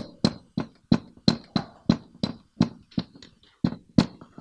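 Dry-erase marker striking and dragging on a whiteboard as a Chinese character is written stroke by stroke: a quick run of short, sharp strokes, about three a second.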